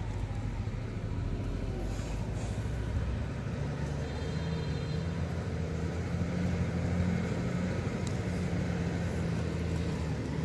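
Low, steady engine drone of a heavy motor vehicle, its pitch rising a little about three to four seconds in and loudest around seven seconds, over a light continuous hiss.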